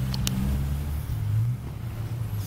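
Ford F-250's 3.9-litre four-cylinder turbodiesel idling steadily, with one short click about a quarter second in.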